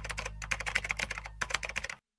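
Typing sound effect: a fast run of key clicks, with a brief pause about one and a half seconds in, stopping suddenly just before the end.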